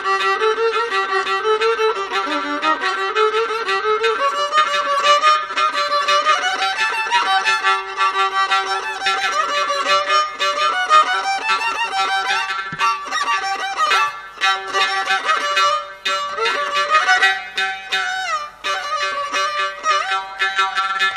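Carnatic violin playing solo, a melodic line of sliding, ornamented notes over a steady drone.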